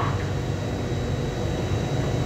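Steady hum and hiss inside a stationary Alstom Metropolis C830 metro carriage standing at a platform with its doors open: the train's air-conditioning and onboard equipment running, with a thin, steady high tone over it.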